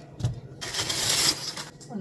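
A soft knock, then about a second of rustling from a bakery bag as a ciabatta loaf is pulled out of it.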